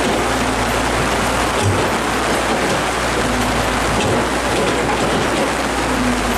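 Heavy rain pouring down steadily, with a low steady hum underneath.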